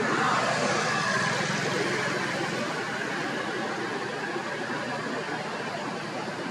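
Steady outdoor background noise, a rushing hiss that is loudest in the first second and eases slightly afterwards.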